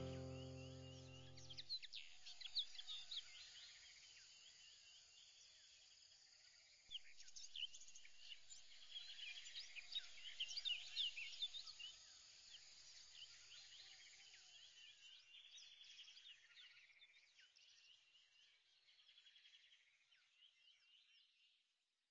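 Faint birdsong: many short, high chirps that thin out and fade away just before the end. It follows the last notes of a music track, which stop about two seconds in.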